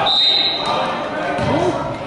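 A basketball bouncing on a gym floor, with voices of people talking in the echoing hall. A brief high-pitched tone sounds at the start.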